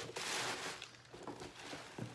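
Crinkly packing stuffing rustling as it is pulled out of a tote bag, loudest in the first second, then fading to softer rustles of the bag being handled.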